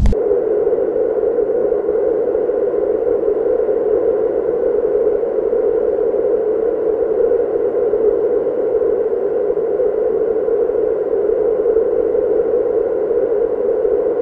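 Steady electronic drone of filtered noise, a hollow mid-pitched hiss held unchanged with no beat or melody. It begins abruptly as the louder rumbling sound before it cuts off.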